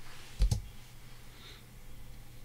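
Two quick clicks close together about half a second in, with a dull thump under them, from the controls of a desk computer being worked, over faint room hum.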